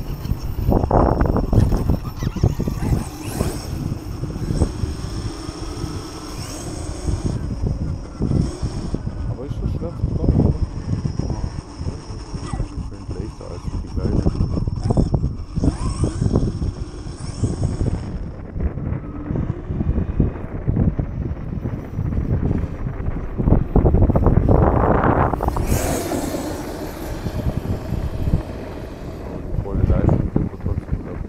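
Onboard sound of an Arrma Kraton 8S RC truck driving over a rough farm track: a steady rumble with many knocks and rattles from the chassis and tyres, and wind on the microphone. A faint high whine runs through the first half, and the sound swells louder about 24 to 26 seconds in.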